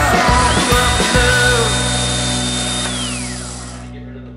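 Power drill boring a hole through thin copper sheet: its high motor whine rises about half a second in, holds steady, then winds down about three seconds in. Background music plays under it and fades out.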